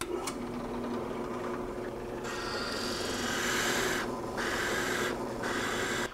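Delta benchtop drill press running, its 1¼-inch Forstner bit boring a flat-bottomed hole into MDF. The motor hum runs throughout, and the cutting noise of the bit starts about two seconds in, breaking off twice for a moment as the feed is eased, before the motor winds down.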